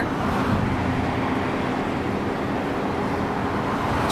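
Steady engine and road noise from inside a slowly moving car.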